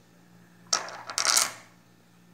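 Small cut stone halves clacking onto a granite countertop: one sharp click a little before a second in, then a quick clatter of clicks just after a second.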